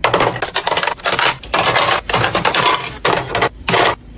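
Makeup brushes and small cosmetics clattering against white plastic drawer organizer trays as they are set in and moved around, a quick, uneven run of clacks and knocks.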